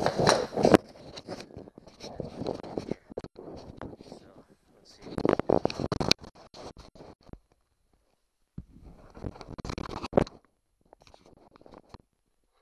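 Handling noise from the plastic leaf blower housing and hand tools being moved about: irregular clicks, knocks and scrapes in several bursts, the loudest about five to six seconds in, with a pause of about a second near the eight-second mark.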